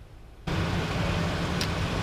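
Road traffic and car noise from an open outdoor microphone, cutting in suddenly about half a second in and then holding steady as a low hum under a rushing noise.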